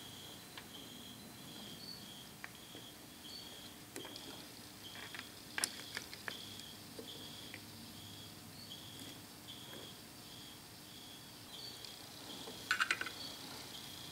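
Faint, scattered metal clicks and taps, with a small cluster near the end, from a lathe's four-jaw chuck being fine-adjusted with chuck keys. Under them runs a faint high chirp that repeats about twice a second.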